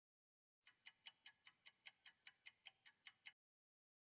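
Faint clock-ticking sound effect: about fourteen quick, even ticks at roughly five a second, starting about half a second in and stopping near three seconds. It marks a countdown while a timed practice question is shown.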